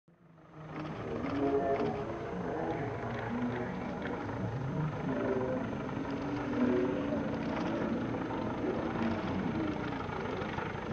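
A de Havilland Tiger Moth biplane's piston engine and propeller running as it flies low past, a steady drone that fades in during the first second.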